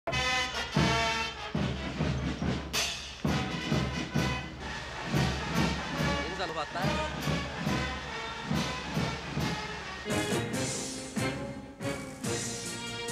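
Brass and drum marching music with steady drum hits, with a voice heard over it at times.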